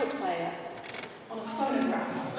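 A woman speaking, with a short pause about a second in.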